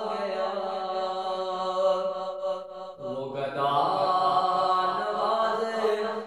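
A man singing an Urdu devotional kalaam in long, drawn-out melismatic notes. He breaks off briefly about halfway, then starts a new phrase.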